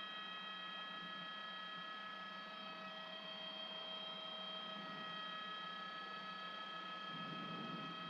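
Faint, steady whine of a news helicopter's cabin noise heard through the reporter's open microphone: several unchanging high tones and a low hum over a light hiss.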